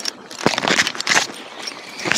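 Close handling noise on the action camera's microphone: a sharp click about half a second in, then about a second of rubbing and rustling as the hands work the plastic Flexi retractable lead handle and its leash right beside the camera.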